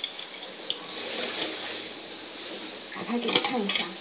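Metal spoon stirring a drink in a ceramic cup, giving a few faint clinks over a steady hiss, heard as played back through a screen's speaker. A voice starts speaking near the end.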